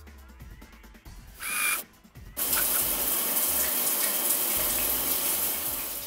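A shower being turned on at its wall valve. A short, high-pitched burst comes about a second and a half in, then the shower head's spray comes on at full flow about 2.4 s in as a steady, loud hiss that fades out just at the end.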